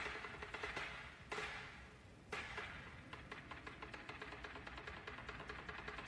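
Faint anime soundtrack music: three sudden hits that fade away in the first two and a half seconds, then a fast, even run of light percussive taps.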